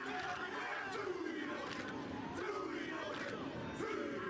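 A rugby team's haka: a group of men shouting a Māori war chant in unison, over steady stadium crowd noise.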